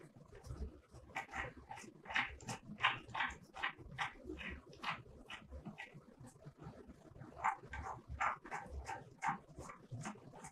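Short, irregular squeaks and light clicks, a few a second, from black-gloved fingers twisting socket-head bolts by hand into a steel square flange block.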